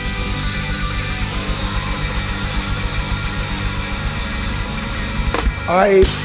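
A live rock band of drum kit, electric guitar and bass guitar plays loudly, holding a sustained chord over rapid drumming. A final hit comes about five and a half seconds in.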